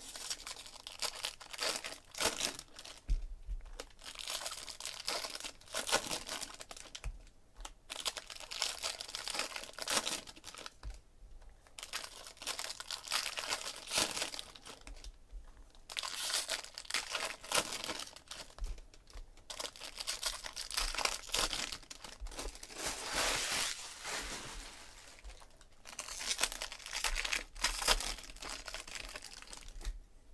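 Foil trading-card pack wrappers being torn open and crinkled by hand, in repeated bouts of a few seconds with short pauses between.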